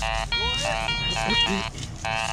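Metal detector sounding its buzzy target tone in several short bursts that jump in pitch as the coil passes over buried metal, the kind of response the user calls a good signal.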